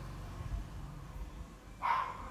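A steady low hum, then one short, high-pitched yelp near the end.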